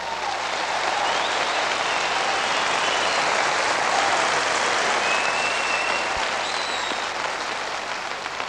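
Concert audience applauding steadily after a live rock song ends.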